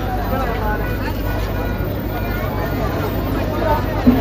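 A large outdoor crowd talking and calling out at once: a steady babble of many voices over a low, even rumble.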